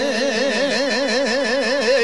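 Izvorna (Bosnian-Posavina traditional) folk music: a long held note shaken in a wide, even vibrato about five to six times a second over a steadier held tone, breaking off at the very end.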